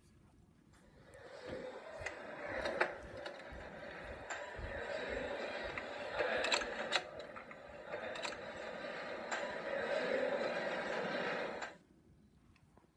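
Television soundtrack: a dense, noisy din that swells in about a second in, holds steady with scattered sharp clicks, and cuts off abruptly just before the end.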